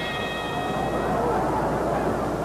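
Boxing ring bell struck once and left ringing, fading away over about a second and a half, signalling the start of round three. It sounds over a steady, noisy background.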